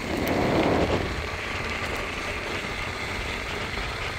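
Electric skateboard rolling along an asphalt path: a steady rumble of the wheels on the pavement mixed with wind rushing over the phone's microphone. The sound swells briefly in the first second.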